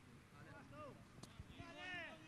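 Faint, distant shouts of players on a football pitch: a couple of short calls, then a longer held shout near the end, over an otherwise quiet background.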